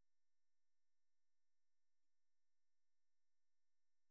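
Near silence: only a very faint steady electrical hum, as from a gated or muted microphone.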